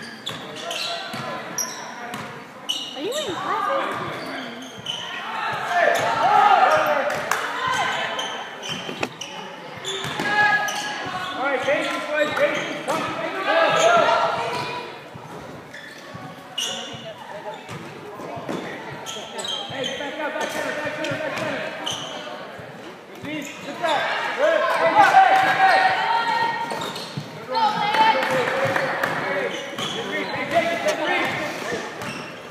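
Basketball game in a large gym: a ball bouncing on the hardwood floor amid shouting voices of players and spectators, the voices swelling louder at several points.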